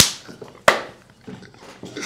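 Two sharp hand claps, the second about 0.7 seconds after the first, amid laughter.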